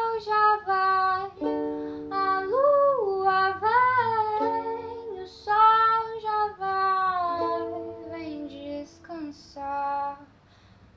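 A song in which a woman's voice sings long, gliding notes over plucked strings.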